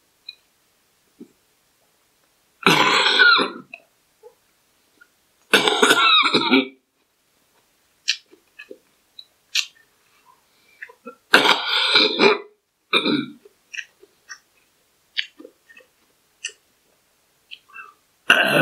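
A man eating salad coughs and burps loudly: three bursts, about three seconds in, about six seconds in, and again around eleven to thirteen seconds in. Small clicks from chewing and cutlery fall in between.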